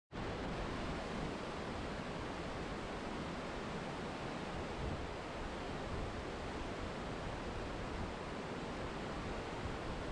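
Waterfall: a steady, even rush of falling water on rock, with no breaks or changes.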